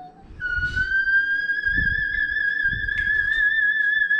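A voice holds one long, very high sung note with a slight vibrato, rising a little in pitch. It starts about half a second in and cuts off sharply near the end, with low thumps underneath.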